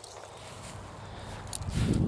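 Faint footsteps and rustling on rough grass, with wind starting to buffet the microphone near the end.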